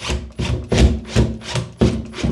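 Cordless drill run in short pulses, about three a second, its bit grinding through the hole in the porcelain tile and into the timber stud behind.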